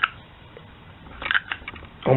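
Hunting knife clicking and scraping inside a heat-formed PVC pipe sheath as it is tugged, a cluster of short clicks in the second half. The sheath grips the blade too tightly for the knife to come out.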